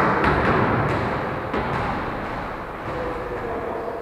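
Volleyball strikes echoing in a large gym hall: a sharp hit as it begins, followed by a few lighter knocks in the first second and a half, over a steady hall background.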